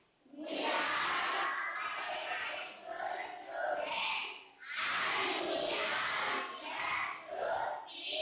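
A classroom of children speaking together in unison, a short chanted statement of many voices at once, with a brief pause about halfway through.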